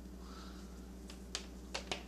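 Three or four light clicks and knocks as a soldering iron is handled and set down on a wooden desk, over a steady low hum.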